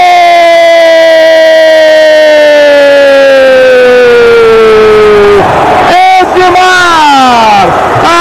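A TV football commentator's long, drawn-out 'gol' shout for a goal, held as one note that slowly falls in pitch for about five seconds. A second, shorter shout follows, also falling.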